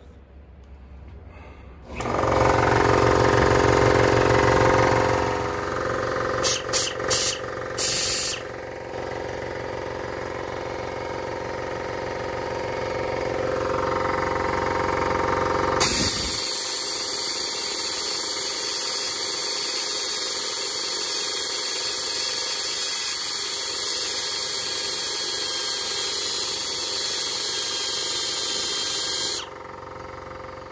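Handheld die grinder with a small grinding stone running at high speed, grinding the edge of a carbon-fiber chassis plate. It starts about two seconds in and stops and restarts briefly a few times around six to eight seconds. About halfway through the sound turns to a higher, hissing tone, and it cuts off near the end.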